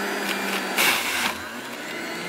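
Breville Juice Fountain centrifugal juicer motor running steadily, with a brief louder burst about a second in.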